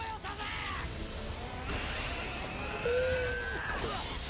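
Anime episode soundtrack: voices shouting over a steady bed of battle noise, with one long yell just under three seconds in.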